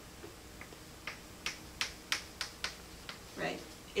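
A quick run of about six sharp taps, roughly three a second, lasting a second and a half.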